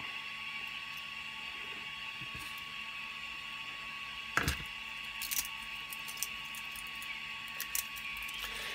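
Small 3D-printed plastic parts being handled and put down on a cutting mat: one sharp click about halfway through, then a few lighter clicks, over a steady background hum with a faint high tone.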